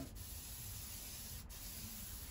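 Aerosol spray can hissing faintly and steadily as a dip coating is sprayed onto a car spoiler.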